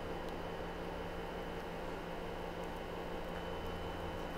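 Steady background hiss with a faint electrical hum and no distinct events: room tone.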